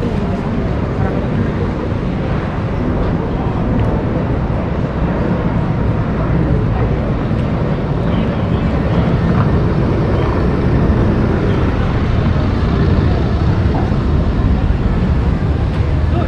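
Ambience of a busy pedestrian street: a steady low rumble, with passers-by talking mixed in.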